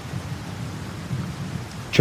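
Steady rain with a low rumble of thunder rolling underneath.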